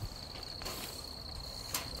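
Crickets trilling steadily in one high tone, with a single short click near the end.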